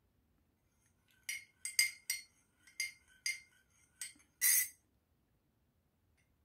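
A metal teaspoon stirring a hot drink in a ceramic mug, clinking against the side about seven times over three and a half seconds. The last clink is the longest and loudest.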